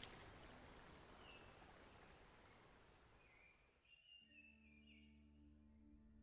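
Near silence: a faint ambient background fading out, with a few faint high chirps in the middle and a soft, low held tone coming in about four seconds in.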